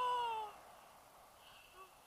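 A woman's drawn-out, high-pitched vocal exclamation that rises and then falls in pitch, lasting about half a second at the start, followed by a faint hiss.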